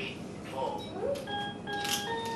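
A handmade stringed instrument built from a soroban abacus, a few plucked notes ringing out from about halfway through as the song's intro begins, with a short rattle near the end.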